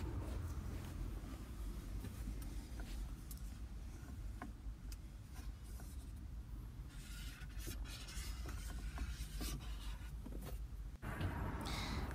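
Faint, short, scratchy rubbing strokes of a cocktail stick wrapped in a baby wipe worked into the seams around a car's rotary gear selector, over a low steady rumble.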